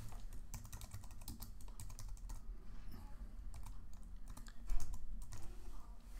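Typing on a computer keyboard: a run of quick, uneven key clicks, with one louder low thump a little before the end.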